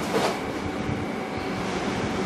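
Steady, even background noise of a studio room, with a faint steady tone in it and no distinct action sounds; a brief faint sound comes just after the start.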